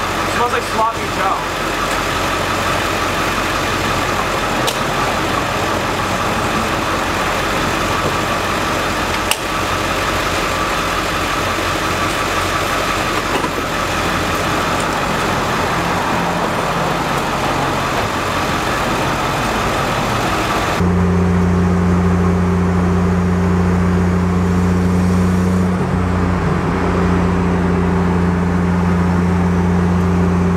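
Steady traffic and engine noise around a car being fuelled at a gas pump. About twenty seconds in it cuts to a steady low engine drone heard inside a car cruising on a highway.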